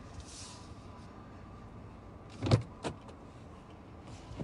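Car cabin noise while driving, a steady low rumble, with two sharp knocks about two and a half and three seconds in from the phone being handled.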